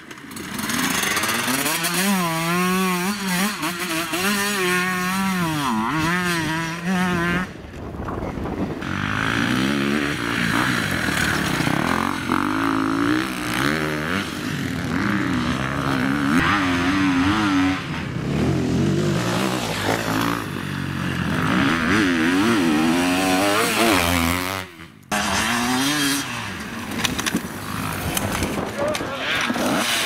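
Enduro dirt-bike engines revving up and down under load, one bike after another, with pitch rising and falling through throttle changes. The sound breaks off abruptly about a quarter of the way in and again near the end as one bike gives way to the next.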